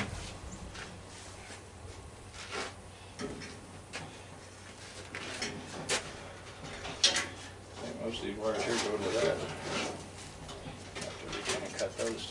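Scattered light clicks and taps of hands and tools handling a furnace's sheet-metal cabinet, the sharpest about seven seconds in. A low voice-like sound comes around eight to ten seconds in.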